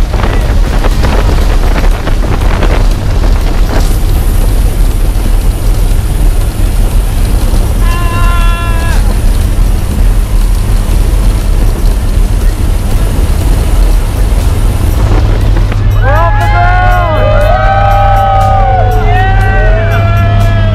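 Jump plane's engine and propeller running loud and steady as it rolls along the runway, with wind rushing in through the open door. A short whoop comes about eight seconds in, and several people whoop and cheer over the engine near the end.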